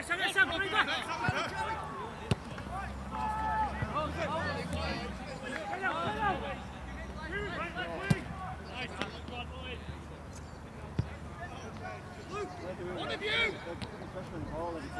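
Footballers shouting to each other across an outdoor grass pitch, with three sharp knocks of the ball being kicked, the loudest about eight seconds in.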